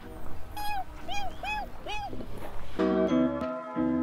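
Background music, which gets fuller and louder about three seconds in. Before that, four short pitched notes stand out, each rising then falling, evenly spaced about half a second apart.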